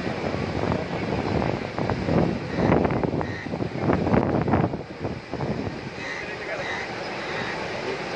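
Sea surf breaking on a sandy beach, with wind buffeting the microphone. It swells to a louder rush from about two to five seconds in. Voices of people on the beach are heard in the background.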